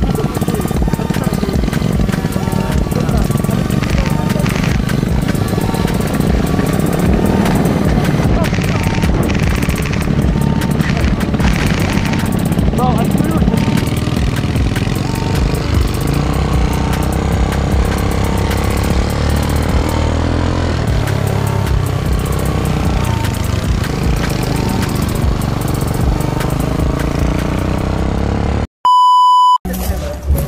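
Go-kart motor running steadily while the kart rides over dirt trails, mixed with background music. A short, single electronic beep sounds near the end.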